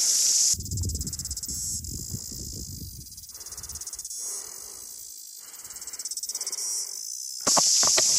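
Dense, loud chorus of insects buzzing in the bush. About half a second in it drops away to a quieter, finely pulsing insect song over a low rumble, and the loud chorus returns near the end.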